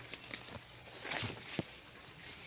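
Leaves and twigs rustling and crackling, with footsteps on dry leaf litter, as someone pushes out through bushes; irregular short taps and crackles.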